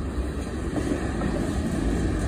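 Cars of a CSX mixed freight train rolling past close by: a steady rumble of steel wheels on the rails.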